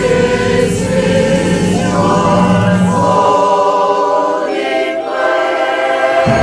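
Mixed church choir singing a hymn together, with the low notes dropping out about halfway through.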